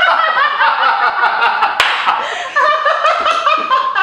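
A small group of men and a woman laughing together, several voices overlapping in giggles and snickers, with one sharp smack about two seconds in.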